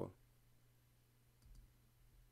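Near silence: room tone with a low steady hum, and one faint click about one and a half seconds in.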